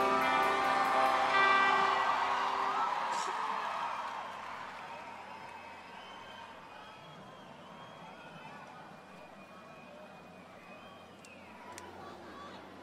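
A live band's final held chord rings out and fades over about four seconds, leaving faint crowd noise with scattered voices.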